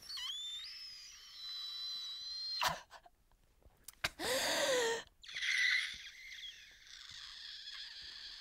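A woman's exaggerated, high-pitched mock wailing, in three drawn-out bouts: a long squeaky whine, a shorter cry about four seconds in that slides down in pitch, then a wavering one to the end.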